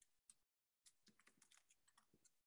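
Very faint typing on a computer keyboard: a run of quick keystrokes, with a short pause before one second in.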